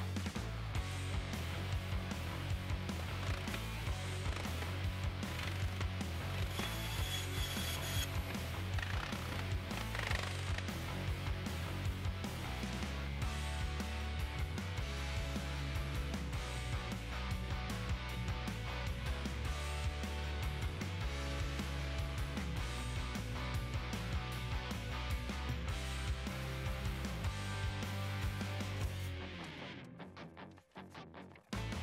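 Background music with a steady beat and a bass line that moves between held notes.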